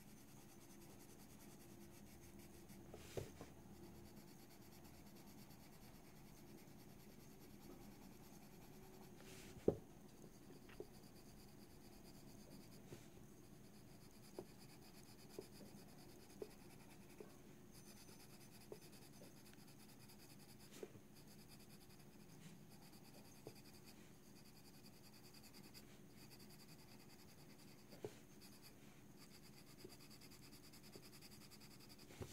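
Coloured pencil shading on the paper of a colouring book: a faint, soft scratching, with scattered light ticks, the sharpest about ten seconds in.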